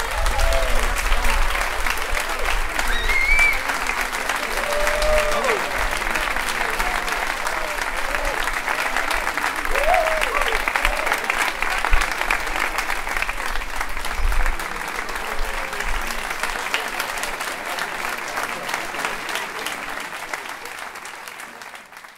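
Audience applauding at the end of a concert band's piece, with a few voices calling out over the clapping. The applause thins and fades away over the last several seconds.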